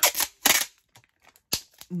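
Clear packing tape being pulled off its roll and torn, heard as two short noisy bursts, followed by a single sharp click about a second and a half in.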